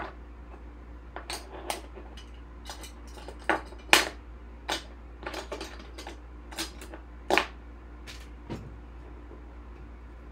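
Trading cards and plastic card sleeves being handled on a table: irregular light clicks and taps, sharpest about three and a half and four seconds in and again near seven seconds.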